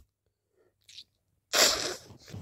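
A person sneezing once: a loud, sudden burst about one and a half seconds in, after a faint short sound. The sneezing comes from an itchy, runny nose that the person suspects is hay fever.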